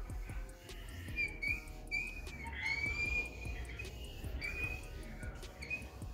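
Felt applicator tip of a Glaco glass-coater bottle wiped in even passes across a car windshield, the felt on the glass giving short, irregular high-pitched squeaks, some sliding up or down in pitch.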